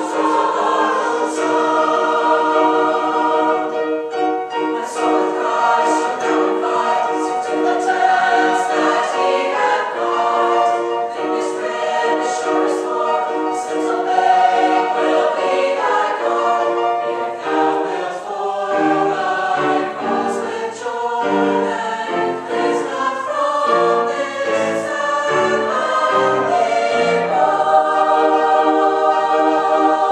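A high-school mixed choir of boys' and girls' voices singing in parts, the sung notes held and changing throughout.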